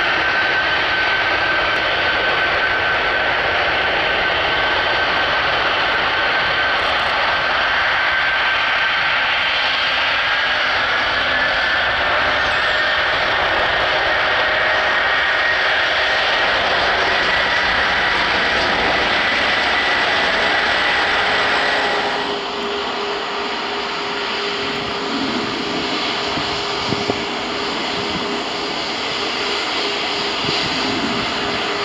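Antonov An-124's four turbofan engines running as the freighter moves on the runway: a steady jet rush with a high turbine whine that climbs in pitch between about ten and twenty seconds in. About twenty-two seconds in, the sound cuts abruptly to a quieter jet airliner with a lower steady hum.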